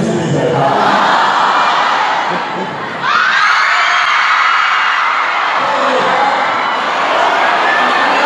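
Large crowd of students cheering and shouting, swelling sharply into loud screaming about three seconds in.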